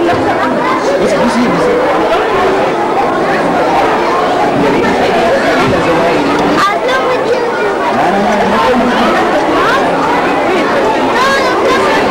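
Many young children chattering at once, their voices overlapping in a continuous babble with no single clear speaker.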